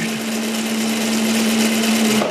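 Shop-built friction clutch running engaged, its motor-driven shaft turning a roller chain and small sprocket: a steady mechanical whir with a steady hum.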